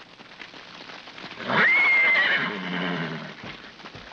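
Horse whinnying once, starting about a second and a half in: a shrill call that holds high, then drops to a lower, fading tone.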